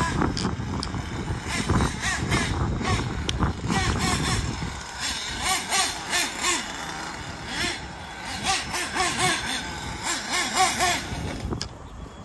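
Nitro engine of a Kyosho Inferno Neo ST 3.0 RC truck being driven on track, revving up and down over and over as the throttle is worked, its whine rising and falling about once a second.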